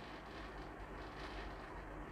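Faint rustle of hands smoothing folded cotton print fabric and setting a clear plastic ruler on it, over a low steady hiss.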